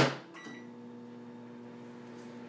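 Microwave oven being started: a clunk right at the start, a short electronic beep, then the steady hum of the oven running from about half a second in.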